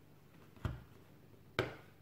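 Two short clicks, about a second apart, as a hand awl is pushed through a small stack of paper held in a bookbinding piercing guide, piercing sewing holes.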